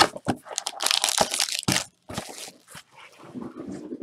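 Plastic wrapping on a trading-card box crinkling and tearing as it is pulled open by hand: a rapid, dense crackle for about two seconds, then quieter rustling and handling.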